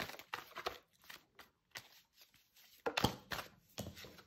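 Oracle cards being handled as the next card is drawn from the deck: a run of short papery flicks and taps, loudest about three seconds in.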